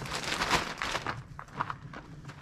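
Rustling of a thin nylon dryer cover being handled and pulled down over its frame, busiest in the first half and fading to lighter rustles.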